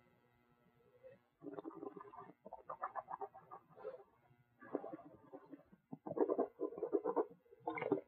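A mouthful of red wine being gurgled and swished, air drawn through it in two rough, bubbling spells of a couple of seconds each, then spat into a stainless steel spit cup near the end.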